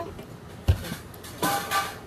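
A single low thump about two-thirds of a second in, like a bump against the table, then a short breathy noise about a second and a half in.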